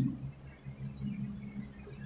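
A pause in speech: faint steady low electrical hum and room tone.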